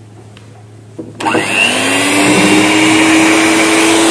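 Electric hand mixer switched on about a second in, its motor quickly rising in pitch and then running at a steady, loud whine as its beaters whisk cake batter in a glass bowl.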